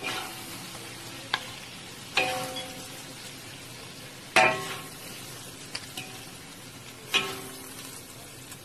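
Shrimp sizzling in a wok while a metal spatula stirs them, knocking and scraping against the pan about six times. Each knock rings briefly, and the loudest comes about four seconds in.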